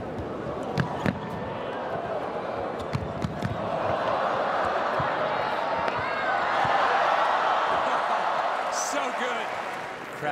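Tennis ball struck back and forth in a rally, with sharp racket hits in the first few seconds. Under them the arena crowd's noise swells, loudest past the middle, as the rally goes on.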